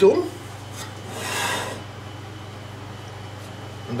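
A cloth kitchen towel pulled off a bowl, a soft rubbing swish lasting under a second, over the steady low hum of an air conditioner.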